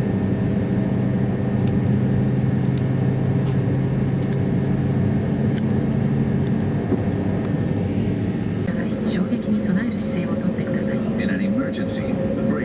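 Steady cabin drone inside an Airbus A321-200 during pushback, several low steady tones over a broad hum, with scattered light clicks. One of the strongest low tones drops out about halfway through.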